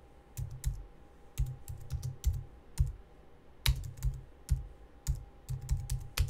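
Typing on a computer keyboard: uneven runs of keystrokes, each a sharp click with a dull thud, with short pauses between runs.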